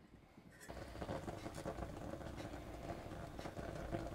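Water simmering under a stainless steel steamer basket of diced potatoes, a faint steady hiss and bubbling with small clicks, starting just under a second in after near silence.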